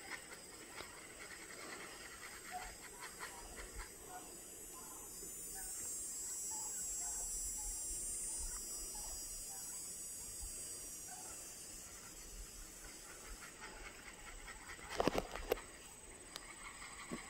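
A flock of domestic turkeys giving scattered short soft calls as they walk, over a hiss that swells and fades in the middle. About fifteen seconds in comes one louder, brief pitched call.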